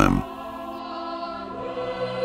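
Quiet background choral music holding sustained chords, with a new note entering near the end. The last syllable of spoken narration trails off at the very start.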